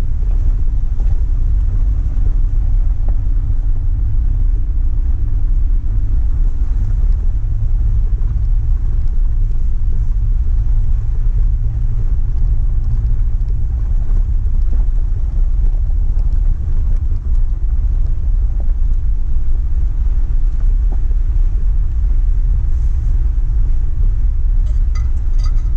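Vehicle driving up a rough gravel mountain road: a steady low rumble of engine and tyres on gravel.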